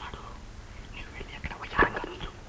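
Hushed, whispery human voices speaking, with one short, louder vocal burst near the end.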